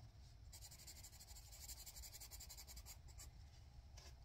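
Faint, rapid scratching of a coloured pencil shading on paper in quick back-and-forth strokes, starting about half a second in and stopping shortly before the end.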